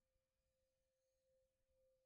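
Near silence, with only a very faint steady ringing tone: the lingering ring of a meditation singing bowl.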